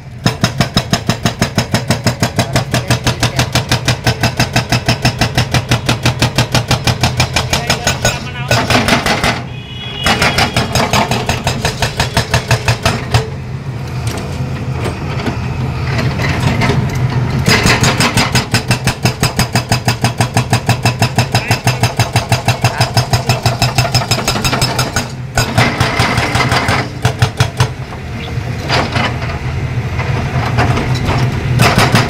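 Hydraulic breaker on a Caterpillar 320D2 excavator hammering into a concrete road slab in rapid, evenly spaced blows, over the steady hum of the excavator's diesel engine. The hammering stops briefly several times and starts again.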